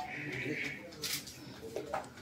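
Faint, indistinct voices in a room, with a short hiss about a second in.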